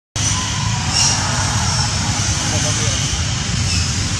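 Steady low rumbling background noise with a few faint high chirps, starting just after a brief dropout to silence at the start.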